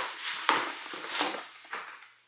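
Bubble wrap and plastic packaging rustling and crinkling as hands dig through a cardboard shipping box, with a sharper crackle about half a second in.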